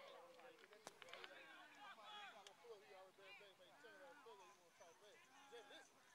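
Faint, overlapping voices of players and spectators calling out around a youth football field, with a couple of sharp clicks about a second in.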